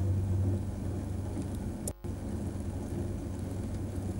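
Potter's wheel turning with hands pressing and shaping wet clay: a steady rumbling hiss with a low hum beneath, cutting out for a moment about two seconds in.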